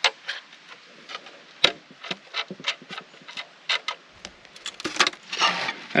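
Irregular light metallic clicks and taps from wing nuts and fittings being undone on a stainless steel Gold Hog processing box, which is being opened to take out its mats.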